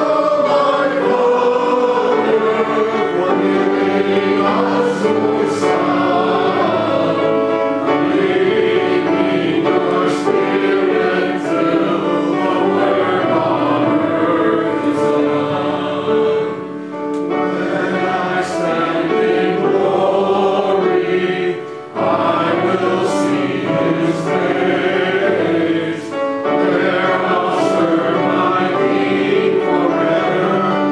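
A hymn sung by many voices together, in held phrases with short breaths between lines.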